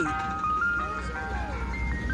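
Ice cream truck jingle playing from the truck's loudspeaker: a simple chime melody, one held note at a time with a few notes sliding downward, over a steady low rumble.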